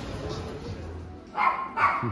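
A dog barking twice in quick succession, two short barks near the end.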